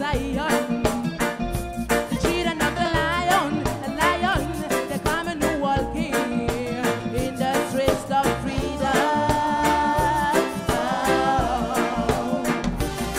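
Live reggae band playing with electric guitars, bass, drum kit and hand drums keeping a steady beat, and a woman singing over it. A long held note sounds about nine seconds in.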